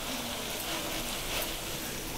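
Oil sizzling steadily around baby potatoes shallow-frying in a non-stick pan, with faint scattered crackles.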